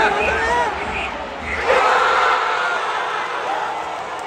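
Football stadium crowd and nearby fans shouting as a goal goes in, rising suddenly to a roar about two seconds in with a long held yell, then easing off.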